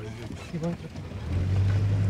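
Car engine running, heard from inside the moving car, with a steady low hum that grows louder a little past halfway through.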